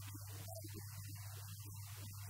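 Steady low electrical hum, with faint, broken traces of a man's voice over it.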